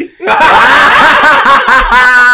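A group of men laughing loudly together, breaking out after a brief pause a moment in.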